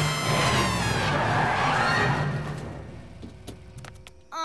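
Cartoon soundtrack music with a sweeping sound effect, the whole mix fading away over about three seconds, then a few faint clicks near the end.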